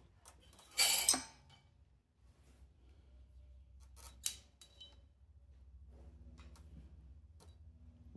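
Aluminium cylinder barrel of a Sym Jet 14 four-stroke scooter engine being worked up off its studs and piston by hand: a short metallic scrape about a second in, then a sharp clink and a few lighter clicks around four seconds.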